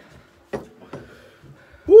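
Quiet room with a single sharp tap about a quarter of the way in, then near the end a man's loud "Woo!", its pitch rising and falling back: a blow-out of breath against the burn of the one-chip challenge's chili heat.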